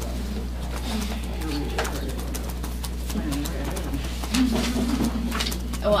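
Low, indistinct murmuring voices in a small meeting room over a steady electrical hum, with a few light clicks from items handled on the table.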